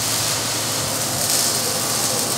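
A loud, steady hiss from shop equipment, strongest in the high end, with no clear pitch or rhythm. It is running when someone is told that's enough.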